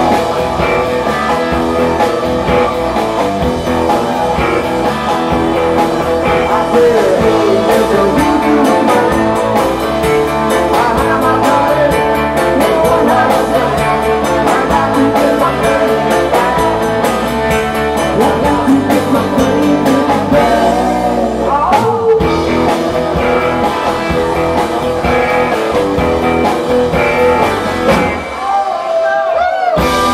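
Live rock-and-roll band playing loud, electric guitar to the fore, with a man singing at times. Near the end the bass end drops out for about a second, a short break before the full band comes back in.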